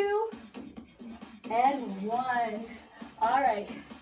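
Background pop music with a singing voice over a steady backing. A short spoken word comes near the end.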